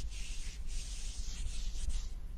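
Hand wiping wet paint splodges off a wooden desk top: a dry rubbing hiss in long strokes, with a short break about halfway through.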